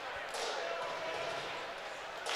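Indoor ice rink ambience: a steady hiss of arena background noise, with no distinct impacts.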